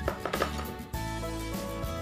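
Background music with held bass notes. In the first second a quick cluster of knocks and clatter comes from plastic storage baskets and skincare bottles being handled.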